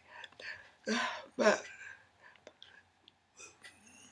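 A woman's voice, soft and halting: two short voiced utterances in the first second and a half, then breathy, whispered sounds and a few small clicks.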